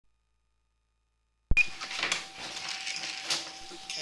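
Silence for about a second and a half, then the sound cuts in with a loud click. Scattered clicks and knocks follow over a faint steady whine: equipment handling noise while a sewer inspection camera is pushed down a drain line.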